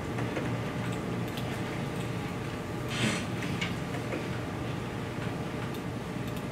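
Classroom room tone: a steady low hum with scattered faint clicks of laptop keys and mouse buttons, and a brief rustle about three seconds in.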